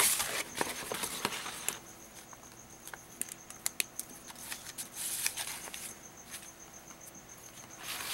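Sheets of paint-coated paper being shuffled and laid on a pile, rustling and sliding in a couple of bouts with scattered light clicks and taps between.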